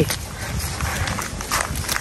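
Folded paper slips being drawn and unfolded by several hands: a rustle of small, irregular paper crackles and clicks.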